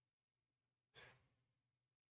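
Near silence, with one short, faint breath from a man about a second in.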